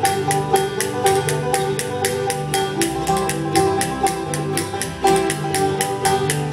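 Bluegrass band playing live: five-string banjo, mandolin and acoustic guitar picking together over a quick, steady beat.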